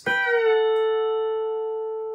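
Pedal steel guitar: a chord picked with the bar at the tenth fret and the pedals released, so the notes dip slightly in pitch into a D chord. The chord then rings on, slowly fading.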